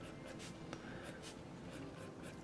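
Marker pen tip drawing quick, short strokes on sketch paper, a faint scratching that comes several times a second as the mustache is hatched in.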